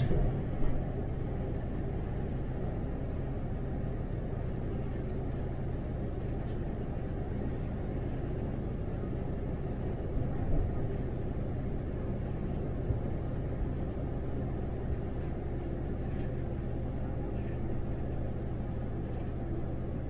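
Cabin noise inside an 18-metre MAN Lion's City articulated bus cruising at a steady open-road speed: a steady low drivetrain hum with road and tyre noise, and a couple of brief knocks, one just after the start and one about halfway through.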